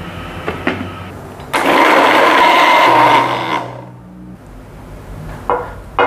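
Electric blender puréeing boiled jengkol slices with water. It runs quieter at first, jumps loud about a second and a half in for around two seconds, then winds down.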